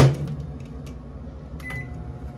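Microwave oven door shut with a thump, then a few presses on its keypad and a short high beep as it is set to cook.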